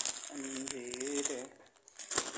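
Thin plastic bags crinkling as hands rummage through them, with a person's voice heard in the middle of it.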